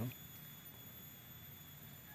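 Faint outdoor ambience: a steady high-pitched insect drone over a low background hiss.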